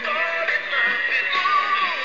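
A song playing: a sung vocal melody over an instrumental backing track.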